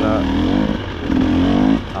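KTM EXC 300 TBI two-stroke dirt bike engine running under throttle in two bursts, each easing off briefly, the second near the end.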